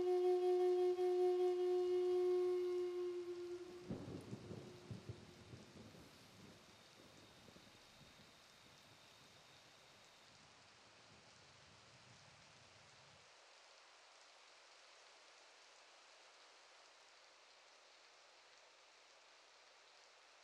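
A long held flute note from background music fades out about three seconds in. It is followed by a brief patch of soft knocks and rustling, then faint steady hiss close to silence.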